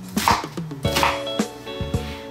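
Chef's knife rough-chopping an onion on a cutting board: several sharp knocks of the blade on the board, spaced irregularly, over steady background music.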